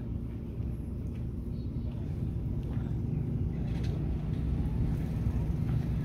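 Steady low rumble of outdoor background noise, with a few faint brief sounds above it.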